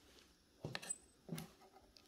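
Faint short taps and clicks of a knife and fork working through a crumbly wedge of Roquefort against a wooden board, a couple of taps a little past half a second in and another around a second and a half in.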